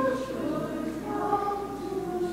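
Choir singing a slow hymn in long held notes.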